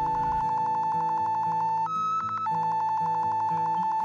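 Metal detector's electronic audio tone in magnetometer mode, a steady pulsing beep that steps up to a higher pitch for about half a second around two seconds in as it registers a magnetic reading.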